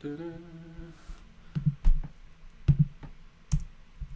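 A man hums a short steady note for about a second, then several sharp computer clicks follow, spaced apart, as he works in a web editor.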